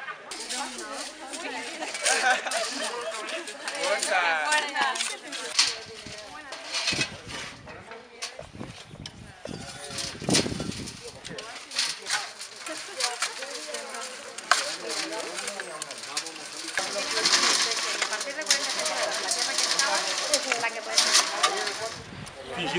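Chatter of a group of people at work, with frequent short clatters and scrapes from tools and soil, such as earth being shovelled through a metal mesh sieve.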